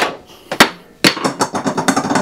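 A sharp knock about half a second in, then a quick run of clicks and rattles from plastic and metal parts as a lamp fitting and a small capacitor with insulated leads are handled.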